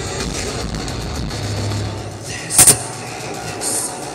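Loud live metal concert sound from a band and PA, distorted and rumbling through a phone's microphone. About two and a half seconds in there is a sharp, loud bang.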